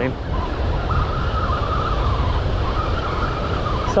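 Steady low rumble of surf and wind on the microphone, with a wavering high tone that comes and goes over it.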